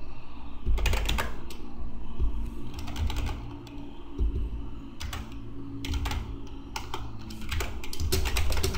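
Computer keyboard keystrokes and mouse clicks in short irregular clusters, with gaps between them.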